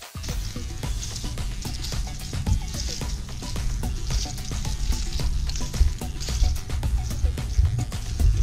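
Background music with a steady beat, a heavy bass line and a bright hissing top.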